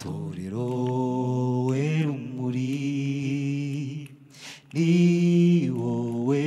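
Mixed gospel choir singing a cappella through microphones, holding long sustained chords in harmony. About four seconds in the voices break off briefly for a breath, then come back louder on the next held note.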